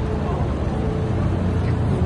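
A supercar's engine running close by, a steady deep rumble.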